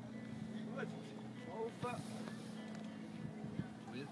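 Faint voices of people some way off, calling out a few times over a steady low hum.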